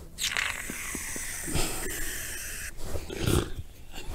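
A loud, rasping, growling roar, one long one of over two seconds and a shorter one near the end.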